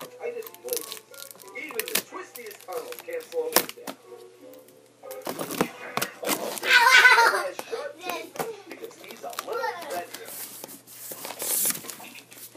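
Cardboard box and packing rustling and crinkling as a sewing machine box is unpacked, with many short sharp crackles. A child's voice breaks in loudly about six seconds in.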